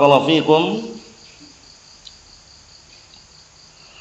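A man's drawn-out word trails off in the first second, then a pause in which only a faint, steady high-pitched chirring of insects, like crickets, is heard in the background.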